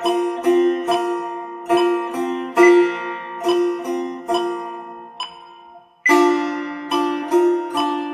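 Solo setar, the Persian long-necked three-string lute, plucked with the index fingernail in a slow exercise of quarter and eighth notes. Single notes in an uneven long-short rhythm, each ringing and fading before the next.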